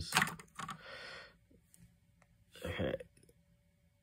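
Light plastic clicks and ticks as a section of Yamaha Reface CS keys is handled, with a short hiss about a second in. A brief low vocal hum from the man comes near the end.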